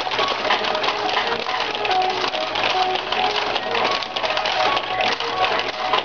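Ukiyo-e pachinko machine playing its bonus music during probability-change (kakuhen) mode, short melodic notes over a dense, steady clatter of steel balls rattling through the playfield.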